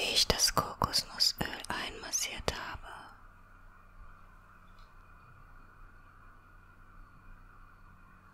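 A woman whispering close to the microphone for about three seconds, then only a faint steady hiss.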